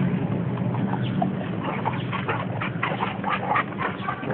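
Labrador retrievers panting close to the microphone in short quick runs of breaths, over a steady low hum.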